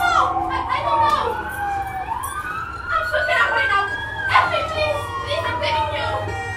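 A siren wailing, its pitch slowly falling, rising and falling again, each sweep lasting about two seconds.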